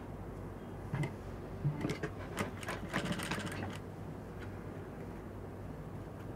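Industrial single-needle sewing machine stitching bias binding onto a neckline. It runs in short bursts of quick needle clicks from about a second in until nearly four seconds, over a low steady hum.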